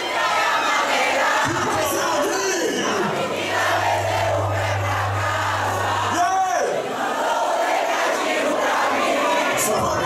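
Packed dance crowd shouting together, loud and continuous. A steady deep bass hum joins in for about three seconds in the middle.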